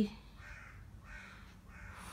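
Fingers brushing over a hand-knitted wool sleeve: three faint, soft rustles.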